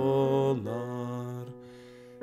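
A voice singing a Swedish hymn, drawing out the end of a line on two long held notes, then falling away into a brief quieter gap before the next verse.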